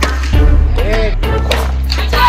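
Background music with a deep, steady bass and a beat.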